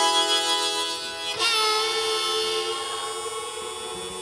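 Live acoustic and electric guitars with a harmonica holding a long note. About a second and a half in a new chord is struck and rings out, and the music grows quieter.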